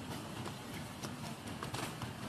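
Steady outdoor background hiss with a few soft, irregular clicks and knocks, about one every half second.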